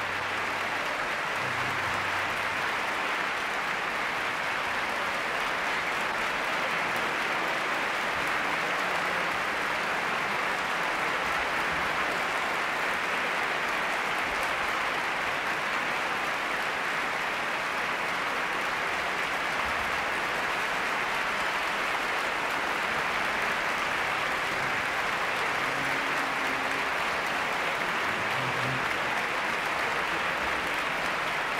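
A large concert-hall audience applauding, a dense, steady wash of clapping that holds at the same level throughout.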